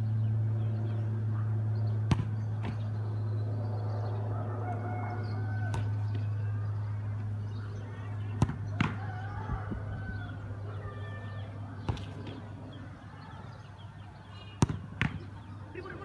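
Footballs being kicked and saved in a shot-stopping drill: a few sharp thuds several seconds apart, the sharpest near the end, over a steady low hum. A rooster crows in the distance during the middle.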